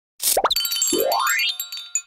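Cartoon-style logo sting: a short hissy burst, then a long rising boing-like pitch glide over tinkling high chime tones, ending in a brief high ping.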